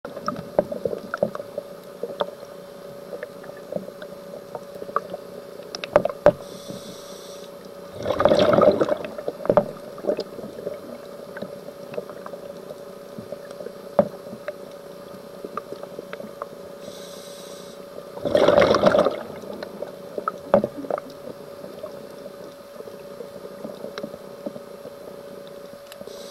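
Scuba diver breathing through a regulator, heard underwater: twice, roughly ten seconds apart, a faint hiss of inhalation is followed by a loud gurgling rush of exhaled bubbles, over scattered crackling clicks from the reef and a steady hum.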